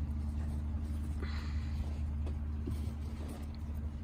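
A steady low background rumble, with a brief soft rustle about a second in as a damp cloth cover is smoothed over the worm bin's bedding, and a few faint ticks.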